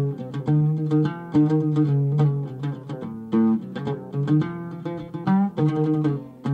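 Oud played with a plectrum: a quick run of plucked notes, some held briefly, in a tahmila in maqam Suzinak, a traditional Arabic instrumental form.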